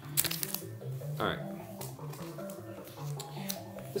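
A vinyl LP in a clear plastic outer sleeve being handled, the plastic crinkling in a burst of crackles in the first half second and a few more later. Music with a low bass line plays underneath.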